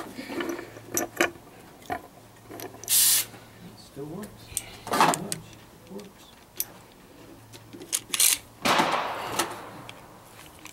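Metal clicks, knocks and short rasps of a bolt-action single-shot pistol being handled and readied between shots, with faint voices in the background. There is no shot.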